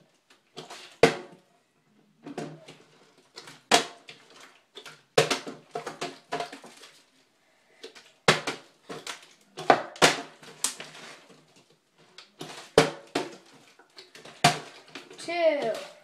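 A part-filled plastic water bottle being flipped again and again onto a plywood board, each toss ending in a sharp knock as it hits the wood, a knock every second or two. Only the last toss near the end lands upright.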